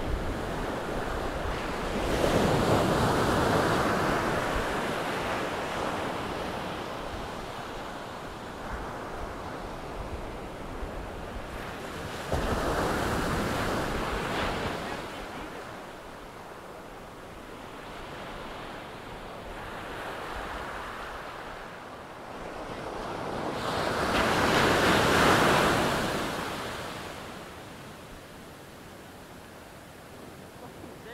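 Ocean surf: waves breaking and washing in, the roar rising and falling in slow swells. There are big surges about two seconds in, a sudden one about twelve seconds in, and the loudest near the end.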